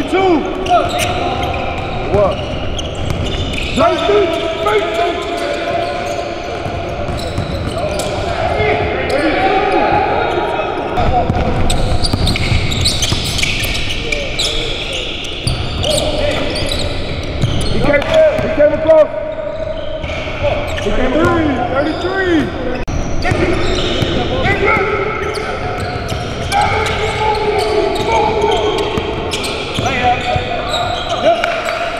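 Basketballs bouncing on a hardwood gym floor with sneakers squeaking, and players' voices calling out, all echoing in a large gym.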